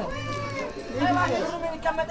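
People's voices and chatter in a crowded market, with a long, high, gliding vocal call near the start.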